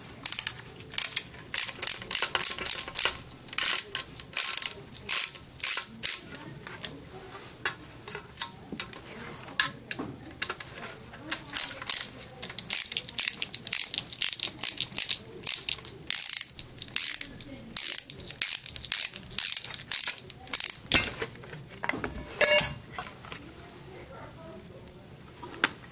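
Screwdriver turning screws out of a vacuum cleaner motor's metal end plate: a long run of sharp ratchet-like clicks, a few a second, with a short rattle near the end.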